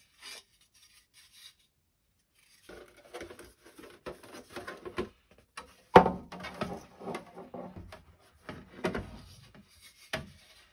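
Handling noise of rigid 3D-printed plastic boat parts and stiff white mold sheets: scraping, rubbing and light tapping as the pieces are moved and laid against a ledge, with a sharp knock about six seconds in and another near nine seconds.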